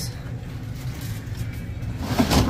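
Store ambience: a steady low rumble with faint background music playing over the store's sound system.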